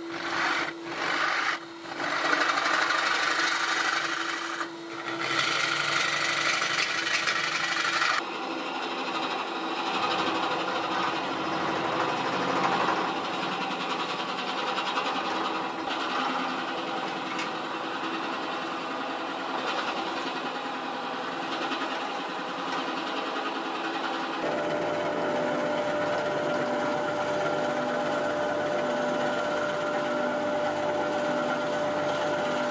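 Wood lathe spinning a poplar blank while a gouge cuts the opening, with a few short breaks between cuts in the first five seconds. About eight seconds in, the sound changes abruptly to a long drill bit boring into the centre of the spinning wood, and it changes again near the end as the boring goes on.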